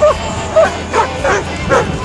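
Dog barking repeatedly, about three barks a second, with music underneath.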